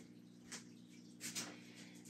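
Near silence: faint room tone with two soft brief ticks, one about half a second in and one near the middle.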